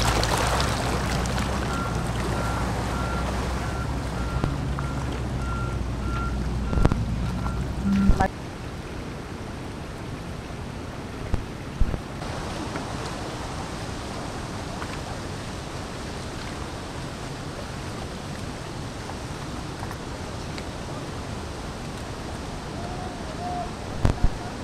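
An excavator's diesel engine running with a high warning beep repeating about twice a second, over flowing mud and water. About eight seconds in, after a cut, a steady rushing noise takes over.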